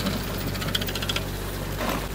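Engine of the pulling vehicle running steadily as a chain drags a mud-packed tire out through a six-inch culvert, with a run of light metallic clinks from the chain for about a second, starting about half a second in.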